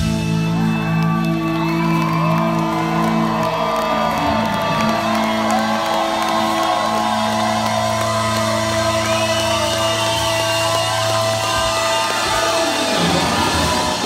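A live rock band holds a long sustained chord through its amplifiers after the drums stop, and the crowd whoops and cheers over it. The held chord dies away about a second before the end.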